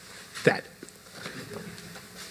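A man's voice saying one short word with a falling pitch about half a second in, then quiet room tone.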